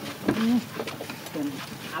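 Macaque monkeys giving a few short, low coo calls, the loudest soon after the start, with light clicks in between.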